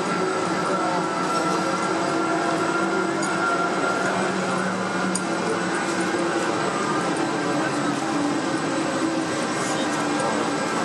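Panama Canal Mitsubishi electric towing locomotive ('mula') running along its lock-wall track, a steady electric whine over a lower hum.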